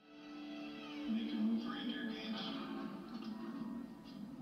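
Film soundtrack fading in from silence: music with a voice over it, louder from about a second in.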